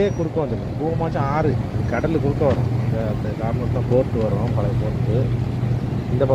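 A person talking continuously over a steady low hum.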